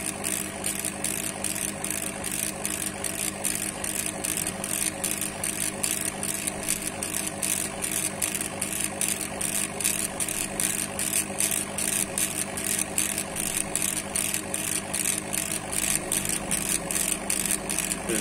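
Laser engraving machine running as it engraves a line of text into wood: its head drives back and forth over a steady hum, giving an even pulse about four times a second.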